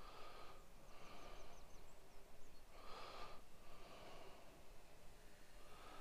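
Faint, regular breathing close to the microphone: soft in-and-out breaths about one a second, with a few faint high chirps about a second in.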